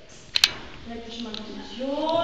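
Two sharp clicks in quick succession about half a second in, then a woman speaking.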